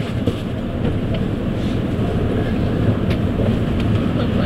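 Running sound heard inside a JR East E257 series limited express train pulling out of the station at low speed: a steady low rumble with a few faint clicks.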